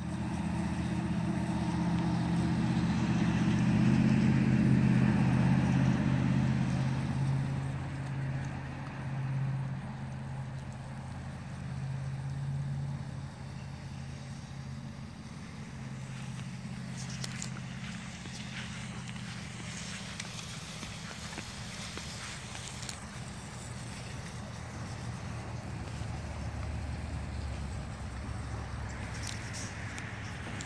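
A motor vehicle's engine running nearby, growing louder over the first few seconds and fading by about halfway through, leaving a fainter low hum. A few light clicks come later.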